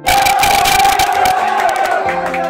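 A football team shouting and cheering together in a changing room: a loud group yell that bursts in suddenly and holds.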